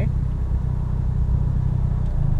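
Ford Focus ST engine idling, heard from inside the cabin as a steady low rumble.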